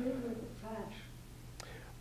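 A man's soft, halting speech in a pause between louder phrases, over a steady low hum.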